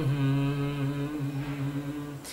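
A man's voice chanting a Sanskrit guru-prayer verse, holding one long low note at a steady pitch that fades slightly toward the end.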